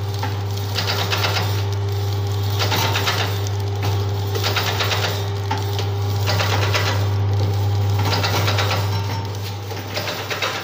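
Automatic vertical pouch packing machine running: a steady motor hum under a rhythmic mechanical clatter that repeats a little slower than once a second as each pouch is sealed and cut from the strip.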